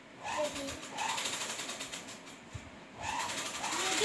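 A child's voice making brief wordless sounds, over a fast, even buzzing rattle.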